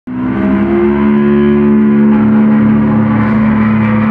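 A loud, sustained, ringing chord from a rock band's amplified electric instruments, held steady after cutting in abruptly at the very start.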